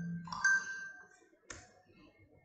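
Computer notification chime: a short bell-like ding that rings and decays about half a second in, following similar dings just before. A single sharp click comes about a second and a half in.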